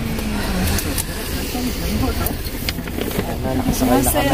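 Steady engine and road noise inside the cabin of a moving shuttle vehicle, with people talking over it.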